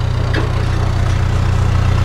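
Narrowboat engine ticking over steadily with a low, evenly pulsing hum, echoing in the brick lock chamber.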